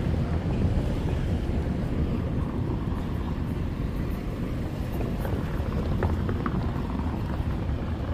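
Wind buffeting the camera's microphone, a steady low rumble, with a few faint ticks about five seconds in.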